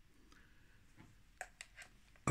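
Near silence, with a few faint light clicks in the second second from fingers handling the take-up spool in the open body of a Leica II camera.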